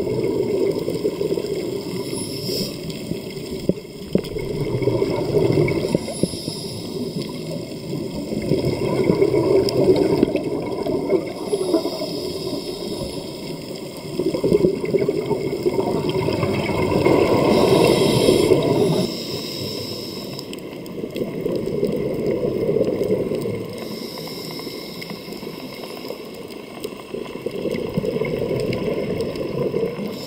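Scuba diver's regulator heard underwater: exhaled bubbles rising in slow, repeated bubbling bursts a few seconds apart, one for each breath.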